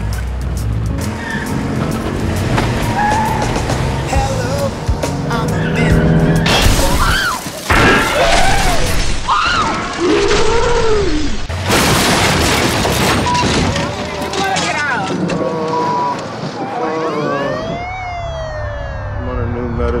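Background music under passengers yelling and shouting inside a moving van, loudest in the middle. Near the end a siren wails, rising and falling.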